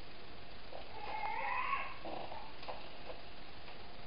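A cat meows once, a call about a second long that bends up and then down, starting about a second in. A few faint clicks of a wooden spatula in the skillet follow.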